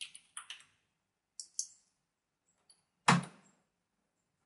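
Computer keyboard keys clicking as a command is typed: a few scattered keystrokes, then one much louder key press about three seconds in as the command is entered.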